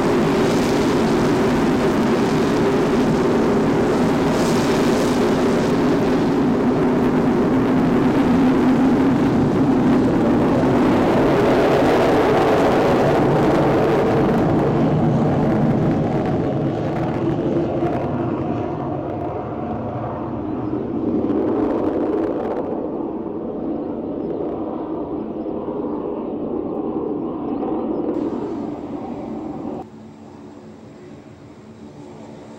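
Fixed-wing aircraft departing: loud, steady engine noise that begins to fade about halfway through as the aircraft draws away.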